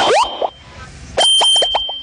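Cartoon-style sound effects: rising boing-like glides at the start, then, about a second in, a quick run of short plops over a held high tone.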